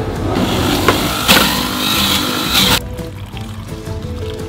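An electric blender running on chunks of honeydew melon for about two and a half seconds, then cutting off suddenly, with a couple of sharp knocks near the middle. Background music plays throughout.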